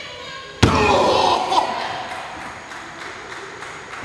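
A single loud smack of a wrestling strike landing on a wrestler's body, about half a second in, echoing through a large gym hall. Voices follow it briefly.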